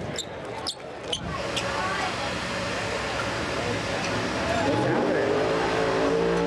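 Drag race car engine noise at the track, preceded by a few sharp clicks in the first second. From about four and a half seconds in, the engine note rises and then holds steady.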